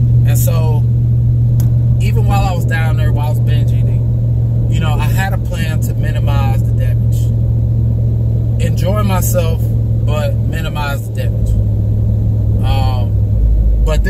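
Pickup truck engine and road noise droning steadily inside the cab under a man's talking. The low drone drops in pitch about three-quarters of the way through and again just before the end.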